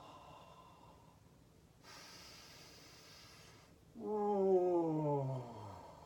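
A woman breathes in audibly, a breathy rush lasting nearly two seconds, then lets out a long voiced sigh about four seconds in that slides steadily down in pitch and fades out, as she holds a standing yoga backbend.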